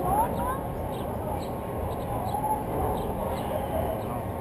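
Roller coaster car creeping slowly along the station track, a steady low running noise, with faint voices in the background near the start.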